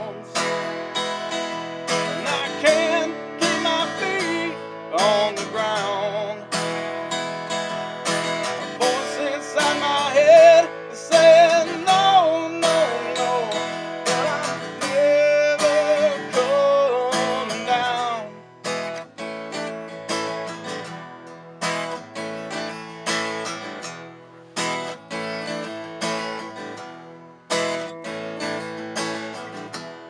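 Acoustic guitar strummed through an instrumental break, with a lead melody line that bends and slides in pitch for several seconds in the middle.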